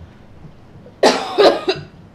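A woman coughing, three coughs in quick succession about a second in.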